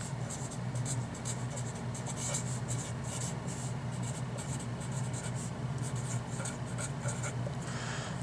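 Sharpie marker writing on paper: a quick run of short scratchy pen strokes as a line of words is written, over a low steady hum.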